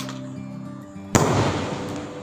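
A firework rocket bursting in the air with one sharp bang about a second in, trailing off over the next second. Background music plays throughout.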